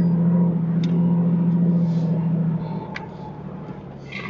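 Jeep engine running as it drives a dirt track, a steady low drone that fades about two and a half seconds in. A couple of light knocks.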